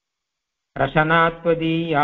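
A man chanting a Sanskrit verse on a steady, level pitch, starting after a short silence about three-quarters of a second in.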